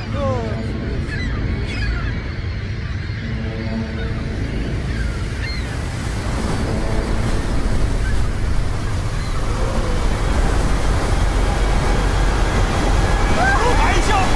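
The rushing roar of an approaching tsunami wave, a dense low rumble of water that builds steadily louder. Faint cries come in places, and shouting starts right at the end.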